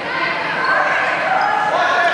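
Players calling and shouting to each other in a large, echoing sports hall during a dodgeball game, with a ball bouncing on the wooden floor.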